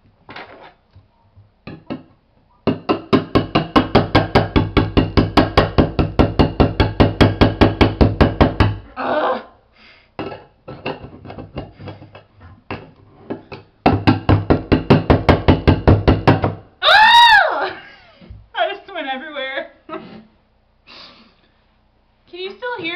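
Scissor points jabbed rapidly and repeatedly into the lid of a steel food can, about five strikes a second, in two runs of several seconds each. The can's metal rings under each strike as holes are punched to open it without a can opener.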